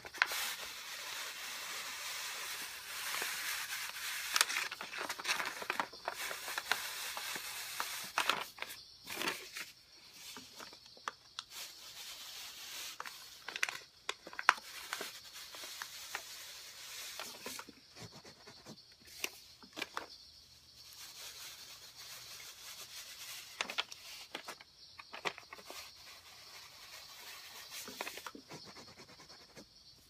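Brown paper bag rustling and scraping as a clothes iron is slid and pressed over it on carpet and the bag is lifted, drawing melted candle wax out of the pile. A steady scraping for the first several seconds, then scattered crinkles.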